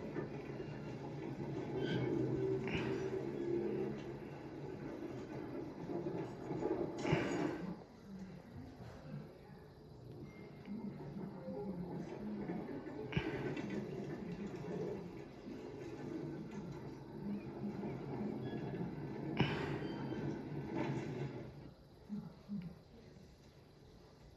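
Film soundtrack playing through a television's speaker and recorded in the room: a steady low rumble broken by a handful of sharp metallic clanks several seconds apart, captioned as clanking. It grows quieter near the end.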